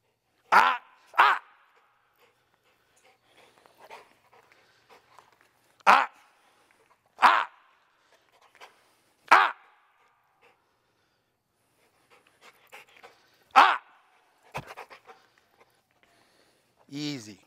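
A dog barking: about six single, short barks, the first two close together near the start and the rest spaced a few seconds apart.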